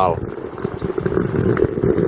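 Road traffic: a motor vehicle's engine running as it passes, a steady rumble that swells a little after the first half-second and then holds.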